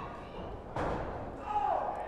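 A single dull thud on the wrestling ring about a second in, from a wrestler's weight landing on the ring.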